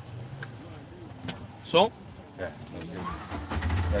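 Motor vehicle engine running close by, a low steady rumble that grows louder near the end. About two seconds in there is one short, loud, rising voice-like call.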